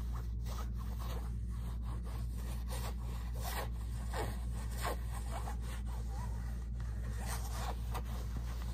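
Fingers and nails scratching and rubbing over a shiny fabric zippered pouch, in a string of quick, irregular swishing strokes over a steady low hum.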